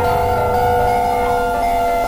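Experimental ambient music built from The Grand Mechaniano sample library: several steady drone tones held together over a low rumble.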